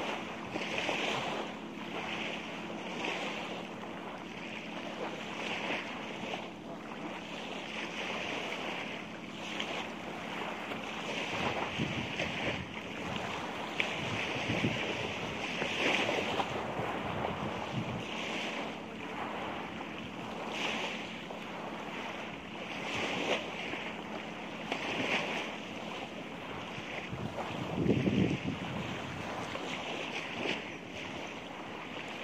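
Sea surf washing on the shore, with wind buffeting the microphone in uneven gusts and one stronger gust near the end.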